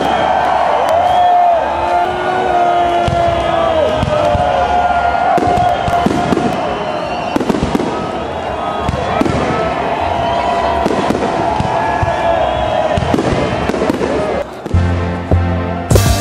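A fireworks display: repeated bangs and crackles of bursting shells over a continuous wash of voices. Bass-heavy music cuts back in about a second and a half before the end.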